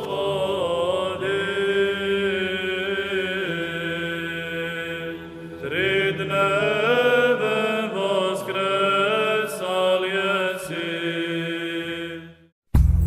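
Orthodox liturgical chant: voices singing a slow, sustained melody over a steady low held note, pausing briefly about five seconds in before the next phrase begins.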